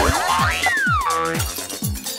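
Short electronic music sting with a thudding beat and a sliding tone that falls in pitch about half a second in, a transition jingle between segments of a TV programme.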